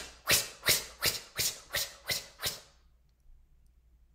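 A rapid run of short, sharp, breathy 'tsh' sounds from the mouth, about three a second, fading and stopping about three seconds in.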